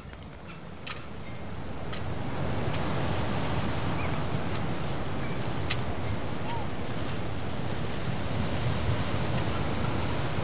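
Sea surf: a steady rush of breaking waves that fades in over the first two or three seconds and then holds even.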